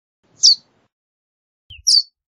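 Verdin giving short, sharp, high call notes: one about half a second in, then a faint lower note and a louder chip right at the end.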